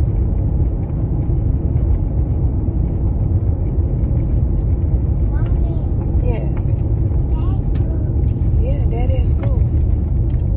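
Steady low road and engine rumble heard from inside a moving car's cabin. A few brief pitched voice sounds come in about halfway through and again near the end.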